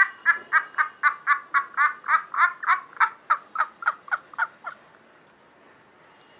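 A high-pitched evil cackling laugh: a quick string of about four 'ha' syllables a second that slows and fades out a little before the five-second mark.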